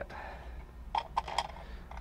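A few light clicks and taps about a second in, from seat belt hardware being handled in the pickup's cab, over a low steady hum.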